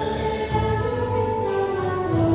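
A choir singing a slow hymn or carol, with long held notes that step from one pitch to the next.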